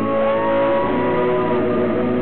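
Live pop music in an arena, band and singers performing together. Shortly after the start a high note slides up, holds for about a second over the held chords, then drops away.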